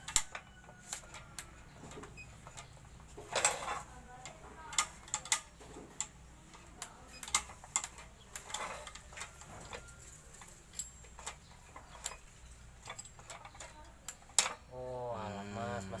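Irregular clicks, knocks and short scrapes from the metal and plastic parts of a new RYU miter saw being handled by hand while its stiff head lock is worked free.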